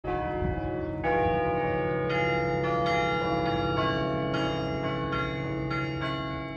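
Cornell Chimes in McGraw Tower ringing a slow tune, one bell note struck about every half second to a second, each left to ring on under the next.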